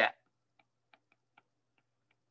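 A handful of faint, irregular ticks of a stylus tip tapping on a tablet's glass screen during handwriting.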